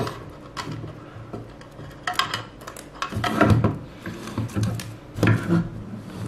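Speaker cables being handled and untangled on a tabletop: scattered light clicks and knocks of plastic plugs and cable on the table.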